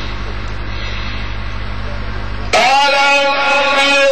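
A steady low electrical hum, then, about two and a half seconds in, a man's voice comes in loud and holds long, slowly bending melodic notes: the reciter resuming a chanted (mujawwad-style) Quran recitation.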